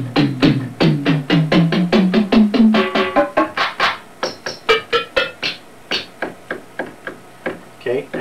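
Ensoniq SQ-2 synthesizer playing drum and percussion sounds from a user-built general MIDI drum-kit setting, one key after another. For about three seconds a low pitched drum note steps up in pitch key by key, about five notes a second. Then come sparser, shorter, higher-pitched percussion hits.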